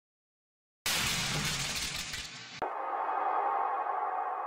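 Sound-effect samples auditioned one after another. About a second in, a sudden noisy crash starts and decays. About two and a half seconds in, a steady, sustained metallic ringing tone replaces it.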